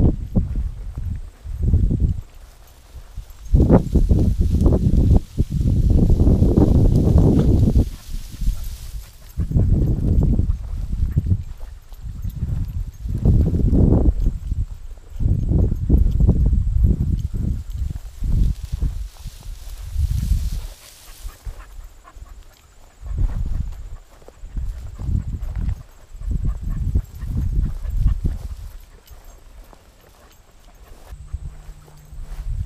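Loud, irregular low rumbling bursts from a camera carried by someone walking through a grassy field: wind buffeting the microphone, mixed with footsteps and the brush of grass.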